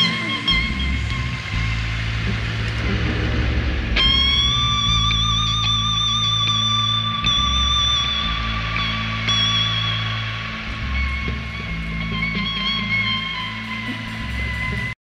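Live jam-band rock music: a bass line under a long, high lead note with a slight vibrato that comes in about four seconds in and holds.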